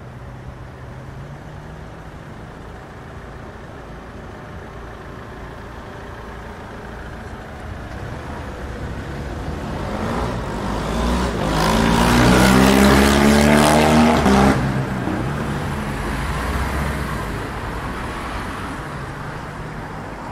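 A road vehicle passing close by, its engine rising out of a steady traffic hum from about eight seconds in. It is loudest a little past the middle, then fades away.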